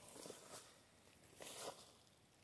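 Near silence, broken by two faint, brief rustles about half a second and a second and a half in.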